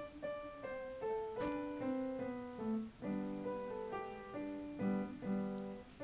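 A piano-type keyboard playing a Christmas carol: a melody of single notes over lower held notes, moving at a steady, moderate pace.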